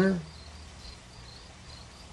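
A faint, high chirp repeating about four times a second, like a cricket, over a steady low hiss, just after a spoken word ends at the start.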